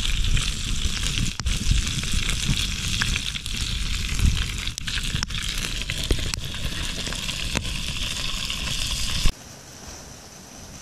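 Wood campfire of split logs burning, with steady hissing and frequent sharp crackles and pops over a low rumble. It cuts off suddenly near the end, leaving a much quieter steady hiss.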